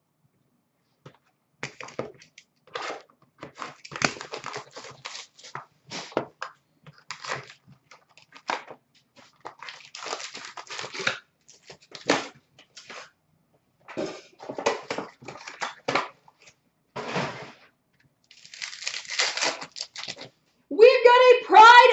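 Hockey card packs being torn open and their wrappers crinkling as the cards are handled. It is an irregular run of crinkling and rustling that starts about two seconds in and comes and goes in short bursts.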